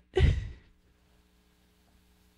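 A woman's short breathy laugh into a microphone, then near silence with a faint steady hum.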